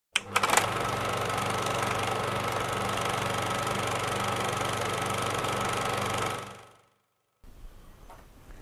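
Film projector running: a few clicks as it starts, then a steady mechanical whir with rapid clatter and a low hum, fading out about six and a half seconds in.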